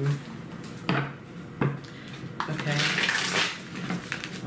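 Tarot cards being shuffled by hand: cards slapping and riffling, with two sharp taps about a second in and a longer rush of shuffling around three seconds in.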